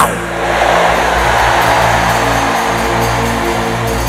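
Church band's keyboard holding sustained chords over low held bass notes. A rushing noise sits over the chords in the first couple of seconds and fades away.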